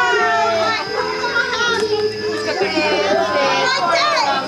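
A group of excited young children chattering and shouting over one another, with adult voices mixed in.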